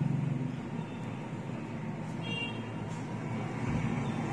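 Steady low background rumble and hiss with no speech, with a faint short tone about two seconds in.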